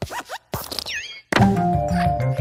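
Cartoon sound effects from a Luxo-lamp spoof logo animation: quick sliding chirps and clicks, then a whistle-like pitch swoop. At about 1.3 s a loud thunk starts a jingle with held notes over a bass line.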